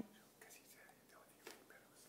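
Near silence: room tone, with a faint tick about one and a half seconds in.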